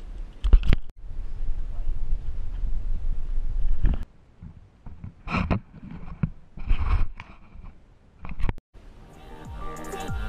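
Low rumbling outdoor noise with a couple of sharp knocks, then a few short separate noises. Background music with a beat comes in near the end.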